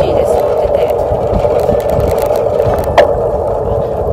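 Steady wind rush and road noise on a handheld camera microphone during a bicycle ride, with a woman talking over it and one sharp click about three seconds in.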